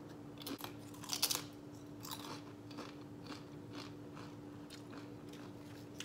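Crunchy food being bitten and chewed close to the microphone. The loudest crunches come just over a second in and again at about two seconds, followed by softer, regular chewing crunches about twice a second.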